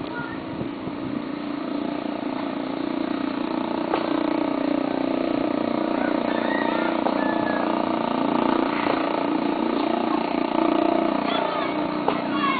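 An engine running steadily at an even pitch, slowly growing a little louder and easing off near the end, with faint voices in the background.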